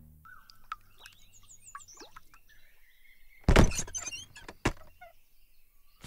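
Small birds chirping in short, high, gliding calls. About three and a half seconds in comes one loud thump, and a lighter knock follows just under five seconds in.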